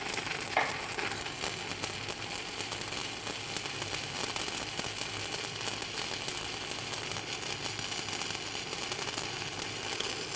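Stick-welding arc burning an eighth-inch 7018 rod at 95 amps from an Everlast PowerArc 200ST inverter welder: a steady, even crackling sizzle as the bead is laid. It is a smooth-running arc, set plenty hot for the rod.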